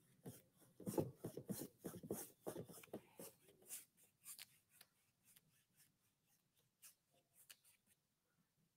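Faint scratchy rubbing of a broad paintbrush dragged across a stretched canvas in quick short strokes, busiest over the first few seconds, then sparser and fainter.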